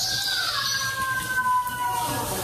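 Cockatiel whistling one long note that slowly falls in pitch.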